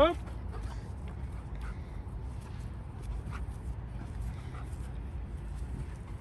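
Steady low rumble of wind on the microphone, with a few faint scattered small sounds above it.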